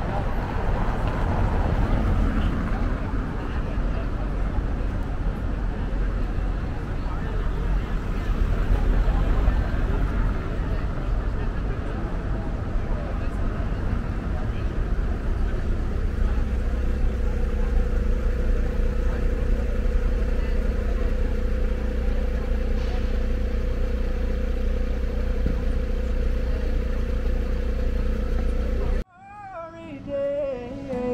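Busy street ambience: cars passing on a cobblestone road with a steady low traffic rumble and passers-by talking in the background. A steady hum joins about halfway through, and the sound cuts off suddenly just before the end.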